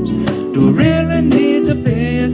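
A man singing held notes over strummed acoustic guitar.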